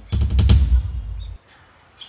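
A dramatic drum sting sound effect: a deep bass boom under a quick run of drum hits, which cuts off suddenly after about a second and a half.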